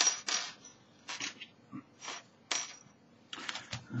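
Small metal dart parts clinking and rattling as they are handled: a series of short, sharp clicks, some with a faint metallic ring.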